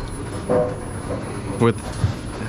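Steady mechanical background noise, a continuous even rumble and hiss, with a short vocal 'mm' about half a second in and a spoken word near the end.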